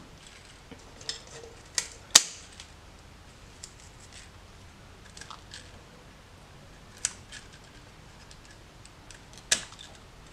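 Pruning secateurs snipping through thin green rowan twigs: a few sharp cuts, the loudest about two seconds in and others about seven seconds in and near the end, with light handling and rustling of twigs and leaves in between.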